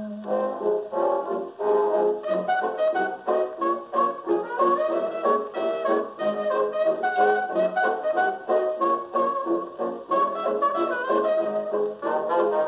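Victor Orthophonic Credenza acoustic phonograph playing a 1920s dance-band 78 rpm record through its horn: an instrumental passage in a steady dance rhythm with no vocal, with little in the high treble.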